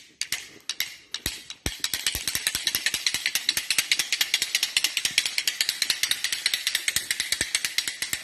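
A fast, even train of sharp clicks or rattles, about ten a second, starting about a second and a half in and running on past the end.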